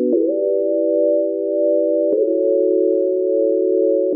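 Electronic music breakdown with no beat: soft, pure-sounding synthesizer chords held steady and moving to a new chord about every two seconds, with a faint click at each change.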